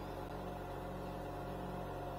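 Steady low hum with a faint even hiss from a burning glass-bead lampworking torch and the oxygen-fed equipment that supplies it.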